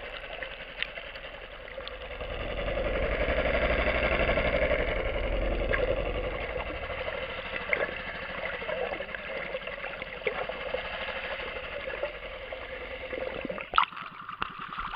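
A boat engine heard underwater, a muffled mechanical drone that swells louder for a few seconds and then eases off.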